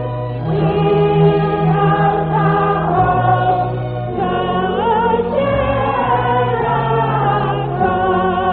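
A choir singing a hymn in parts. It holds notes with vibrato, and the melody and a lower part move from note to note together.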